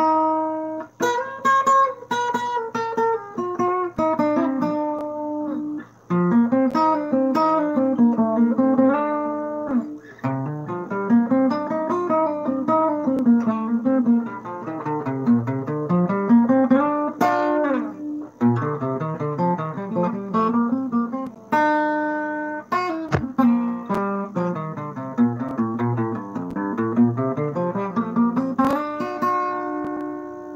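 Acoustic guitar played solo, picking a melody in runs of single notes that climb and fall, with a few strummed chords.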